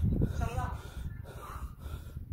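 A person out of breath after hard exercise, gasping and breathing heavily, with a short voiced sound about half a second in.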